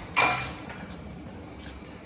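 A short rustle of the handheld phone camera being moved, about a quarter second in, fading quickly into low steady room hiss.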